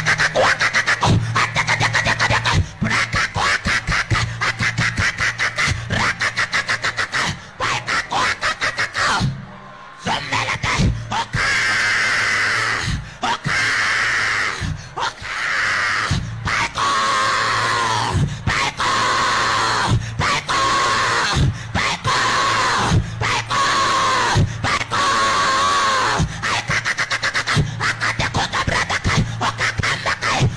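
A man's amplified voice shouting into a handheld microphone over music with a fast, steady beat.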